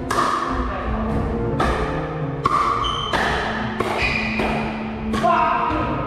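Pickleball paddles striking a plastic ball in a rally: a string of sharp pops less than a second apart, echoing in a gymnasium, over background music.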